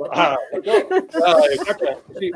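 Voices talking over one another and laughing, with a breathy hiss about a second and a half in.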